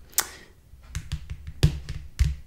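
Small charms being handled on a surface: one sharp click just after the start, then a quick run of light taps and knocks in the second half.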